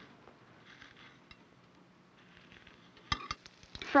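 A few light metal clinks of a kitchen utensil against cookware about three seconds in, over a faint steady hiss.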